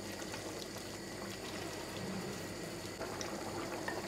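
Roe deer ragù simmering in a wide pan, a steady soft bubbling, while a wooden spoon stirs through it.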